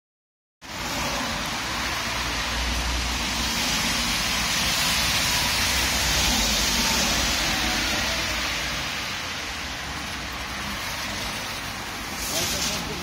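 Street traffic noise: a steady hiss with a low rumble underneath. It cuts in just after the start, swells to a peak about halfway through, then eases off.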